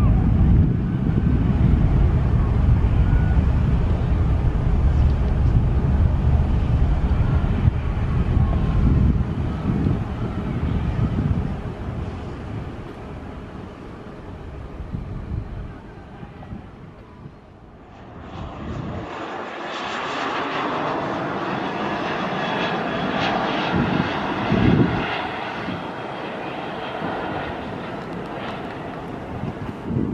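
Jet airliner's engines at takeoff power: a loud low rumble that fades over the first dozen seconds as the aircraft climbs away. About 18 seconds in the sound changes abruptly to a lighter, hissier engine noise.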